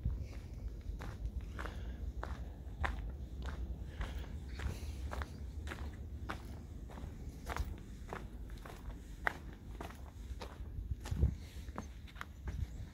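Footsteps on a gravel path at a steady walking pace, a little under two steps a second, over a steady low rumble, with one heavier step near the end.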